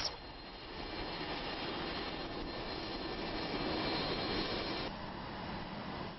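Steady aircraft engine noise, growing a little louder and then dropping suddenly about five seconds in.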